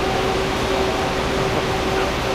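Steady drone of a row of running Caterpillar flywheel UPS units, with a constant pitched hum over a rush of cooling air; the flywheels spin at 7,700 RPM.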